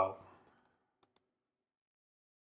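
A man's voice trailing off at the start, then near silence broken by two faint clicks about a second in, close together.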